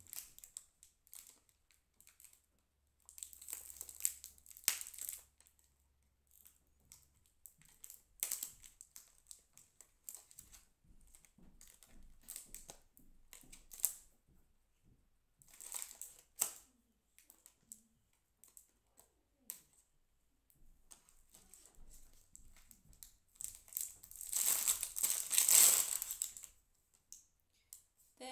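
Plastic retail packaging on a new hairbrush being cut with scissors, torn and crinkled off in scattered bursts of rustling and clicking. The longest and loudest crinkling comes near the end, as the packaging comes away.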